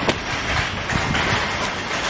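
Steady rustling noise from the camera being carried and handled, with one sharp click just after the start.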